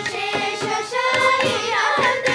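A children's chorus singing a Carnatic kriti in raga Rasikaranjani, set to Adi tala in tisra nadai, with violin and percussion accompaniment (mridanga, ghata and morsing). The percussion strokes grow sparser about a second in while the voices hold sustained notes.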